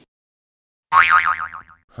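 Edited-in cartoon sound effect over the title card: after about a second of silence, a single wobbling tone that falls in pitch for about a second. Near the end a second effect starts, a tone that sweeps up and then back down.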